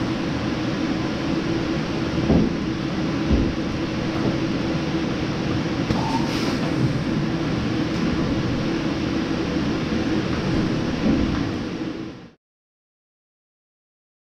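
Steady mechanical hum of a Lely robotic milking box and its machinery, with a few knocks about two and three seconds in as the entry gate opens and a Holstein cow walks into the box.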